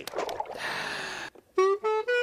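A burst of hissing noise, then about one and a half seconds in a wind instrument starts a run of notes that climbs in steps.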